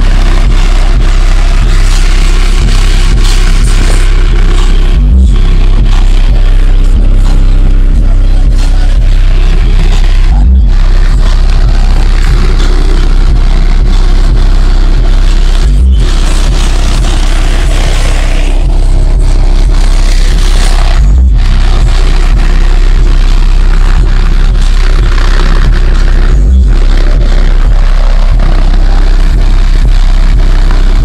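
Car subwoofer in a ported wooden enclosure playing bass-heavy music at extreme volume: constant deep bass with a heavier hit about every five seconds. The air blasting through the port is pushing against a wad of paper stuffed into it, and that test ends with the paper torn to confetti.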